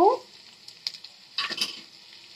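Onions and egg frying in a steel kadai with a faint, steady sizzle. A few small clicks are heard, and a short scraping sound comes about one and a half seconds in.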